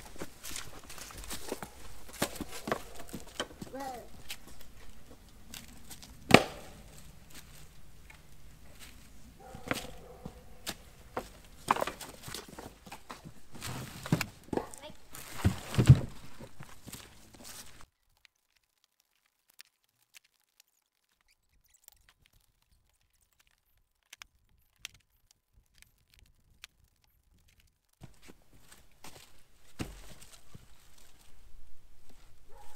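Split firewood knocking and thunking as pieces are pulled from a log pile and handled, with footsteps; the sharpest knocks come about six, twelve and sixteen seconds in. The sound then drops to near silence for about ten seconds before returning near the end.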